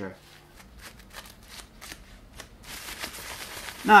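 Tissue paper rustling and crinkling against a small laptop cooling fan as it is wiped clean of WD-40, in scattered little crackles that turn into a denser, steadier rustle a little under three seconds in.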